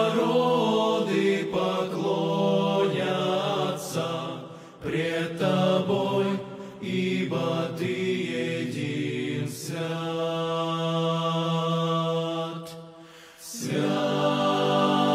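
Male vocal group singing a slow hymn in harmony, holding long sustained chords. The singing breaks off briefly about five seconds in and again just before the end.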